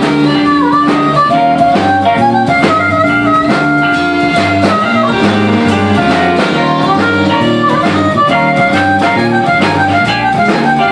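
Live blues band: a harmonica played through a vocal microphone, with electric guitar, bass guitar and drum kit keeping an even beat behind it.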